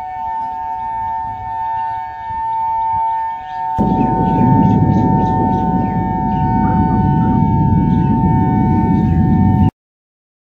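A loud, steady siren-like tone holding two pitches together. About four seconds in, a loud low rumble joins it, and both cut off suddenly just before the end.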